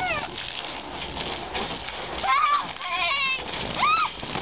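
Children squealing in high-pitched bursts, about two and a half seconds in, again at three seconds and near the end, over water spraying and splashing on a wet trampoline mat as bodies bounce and land on it.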